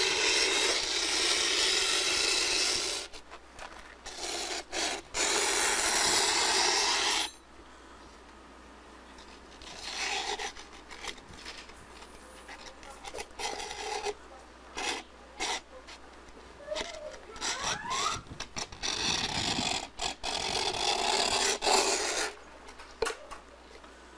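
A rasping scrape in two long stretches over the first seven seconds, then shorter scrapes and rubs on and off.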